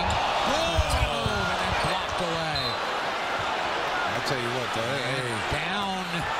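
Arena crowd noise during live basketball play, with a basketball bouncing on the hardwood court in the first second or so and raised voices running through it.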